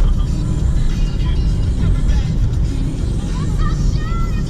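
Road and engine noise inside the cabin of a moving Mazda car: a steady low rumble.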